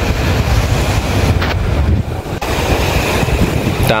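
Steady wind buffeting the microphone, with a heavy low rumble underneath.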